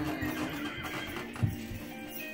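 Electronic baby toy playing a recorded horse whinny, its wavering pitch falling over the first half second, with clip-clop hoofbeats and a short tune; a single thump about one and a half seconds in.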